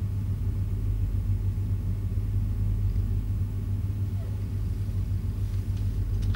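Steady low hum with nothing else distinct over it: the room tone of a small office recording.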